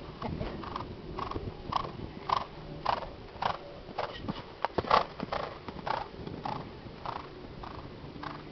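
A horse cantering on sand arena footing, its strides coming in a steady rhythm of nearly two a second. The sound is loudest as it passes close, with sharp hoof strikes about five seconds in as it lands from a jump.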